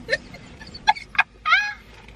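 A woman laughing in high, squeaky bursts: a few short squeaks, then a longer squeal that slides down in pitch about one and a half seconds in.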